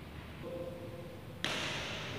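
Low, quiet room tone, then a steady hiss of indoor-hall ambience cuts in suddenly about a second and a half in.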